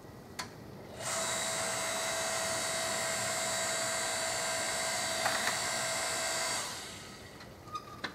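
Homelite electric log splitter running. Its electric motor starts about a second in and whines steadily for about five and a half seconds while the ram drives a log onto the wedge, then winds down. There are two small ticks over the motor about five seconds in.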